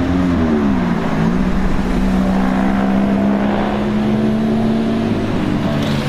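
A red Ferrari mid-engined V8 spider running at low revs as it drives slowly by. Its note drops over the first second and a half, then holds steady.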